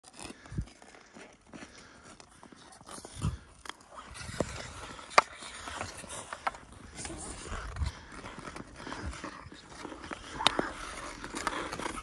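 Ice skate blades scraping and gliding on wild lake ice, with hockey sticks clacking against a puck, the loudest sharp hit about five seconds in, and a few dull low thumps.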